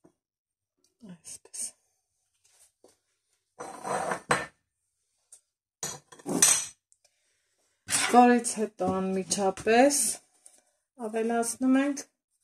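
A metal spoon and a spatula clinking and scraping against a stainless-steel mixing bowl: a few short clatters spread over the first half, with the mixer switched off.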